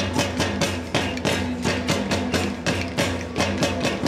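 Hundreds of pairs of wooden claves struck together by a large crowd in a fast, even rhythm of about five clicks a second. A band plays along underneath with steady low notes.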